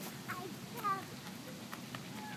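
A young child's brief high-pitched vocal sound about a second in, with a fainter one just before it, over quiet outdoor background.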